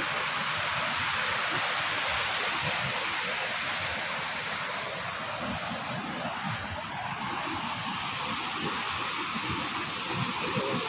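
Steady rush of a fast mountain river running white over rocks, with wind buffeting the microphone in a low, uneven rumble.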